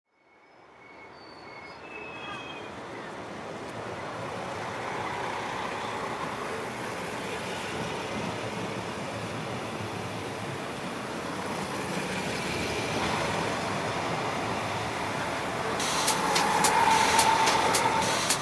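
Street ambience fading in: a steady rumble of rail and road traffic, with a few short high chirps near the start. Near the end comes a quick run of sharp clicks.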